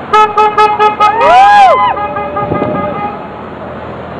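A car horn tooting in a rapid string of short beeps, about six in the first second, then people cheering with rising-and-falling whoops over the horn, dying away by about three seconds in.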